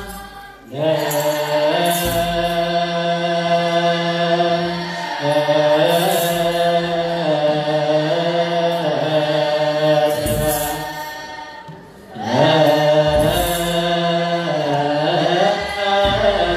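A group of young voices chants wereb, Ethiopian Orthodox Tewahedo liturgical hymnody, together in repeated melodic phrases over a sustained low note. The chant breaks off briefly about half a second in and again around the eleventh to twelfth second, then resumes.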